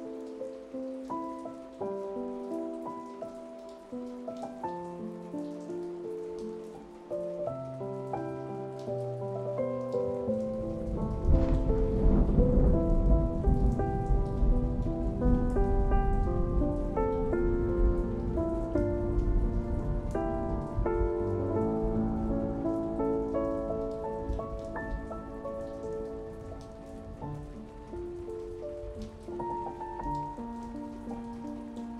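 Slow, soft piano music over steady rain. About ten seconds in, a long rumble of thunder swells up, becomes the loudest sound, and slowly fades away.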